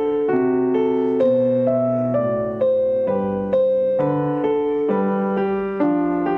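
Slow solo piano music, chords and single notes struck about once or twice a second, each ringing and fading before the next.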